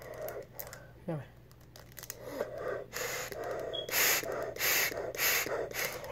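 A child breathing through an asthma inhaler spacer with a face mask: quick, hissy breaths in and out through the holding chamber, about two a second, starting about halfway through.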